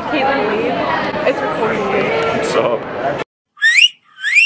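Several voices chatter at once in a school hallway, cut off abruptly about three seconds in. Near the end a short, high whistle-like tone glides up.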